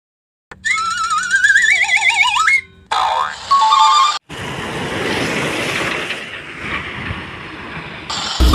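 Cartoon sound effects: a wobbling, rising boing-like slide tone for about two seconds, then a short chime-like effect. From about four seconds in, a steady rushing noise swells and then fades.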